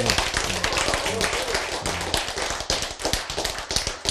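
An audience applauding: many hands clapping densely and steadily, with faint voices underneath.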